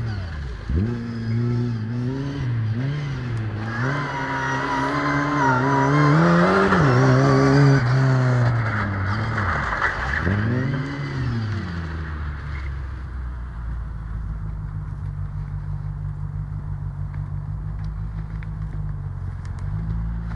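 Lada 2107's four-cylinder petrol engine revving up and down again and again as the car is driven, loudest and harshest about four to eight seconds in. From about twelve seconds on it settles to a steady, even drone.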